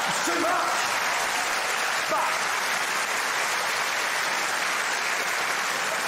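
A large live audience applauding, with laughter mixed in: a steady, even wash of clapping after a punchline.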